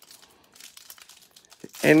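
Faint, irregular crinkling of a foil trading-card pack wrapper being torn open and handled, then a man's voice near the end.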